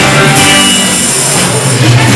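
Loud amplified live dance band playing an instrumental stretch, with no singing.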